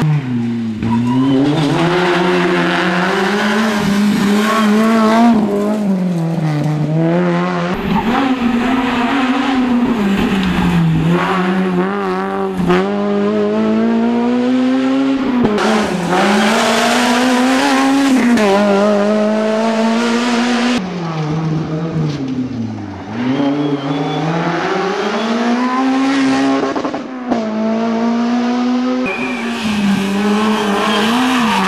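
Honda Civic rally car's four-cylinder engine at high revs, its pitch climbing and dropping again and again through gear changes and lifts for corners. Heard as several separate passes joined by abrupt cuts.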